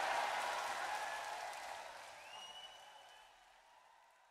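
Applause and crowd noise fading out to near silence, with one rising whistle about two seconds in.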